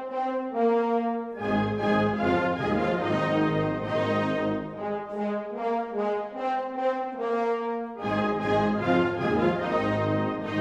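Symphonic wind band playing, with the brass prominent. A light passage of short, detached repeated notes opens out about a second and a half in, when the full band enters with its low instruments. The texture thins again around the middle and the full band comes back in near the end.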